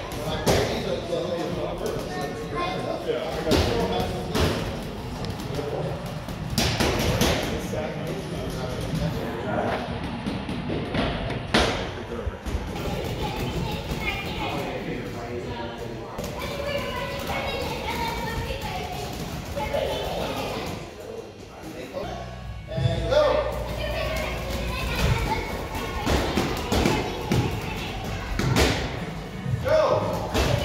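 Children's boxing gloves striking Rival heavy punching bags, giving irregular dull thumps through a background of voices and music.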